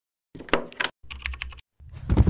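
Logo-intro sound effect: a quick run of sharp clicks and clacks, like keys being struck, followed near the end by the start of a heavy low boom.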